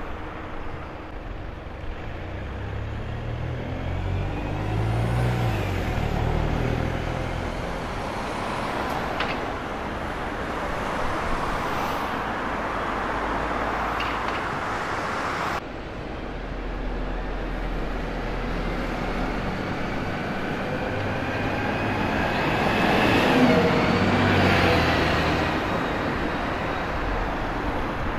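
City street traffic: a single-decker bus's diesel engine pulling away through a junction, then, after a sudden cut, cars and buses passing, one engine rising in pitch as it accelerates and loudest near the end.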